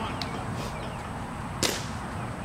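A single sharp pop about one and a half seconds in, as a pitched baseball strikes the catcher's leather mitt, over steady outdoor ballpark background noise.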